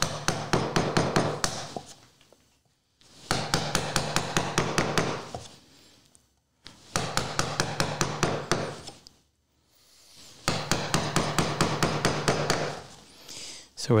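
Chisel driven by rapid, light mallet taps, chopping waste out of a half-blind dovetail socket in many small chops. The taps come in four runs of about two seconds each, about five a second, with short pauses between runs.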